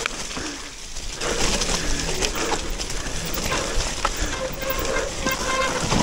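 Mountain bike riding down a wet, muddy trail: the steady noise of tyres in mud and the bike rattling over the bumps, with a faint steady hum in the last couple of seconds.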